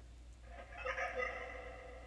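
Faint, warbling voice-like tones from the Phasma Box spirit-box app, starting about half a second in and fading out about a second later.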